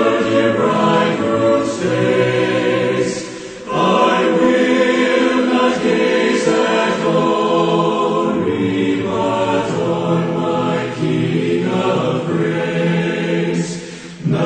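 A choir singing a slow hymn in long, held phrases, with a short break about three and a half seconds in.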